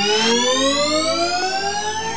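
Electronic dance remix intro: a synthesizer riser sweeping slowly upward in pitch, with a short noise swoosh just after the start and a second synth tone gliding downward in the second half.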